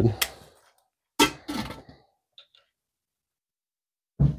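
Short snatches of speech, with a sharp click just after the start and a couple of faint ticks about halfway through.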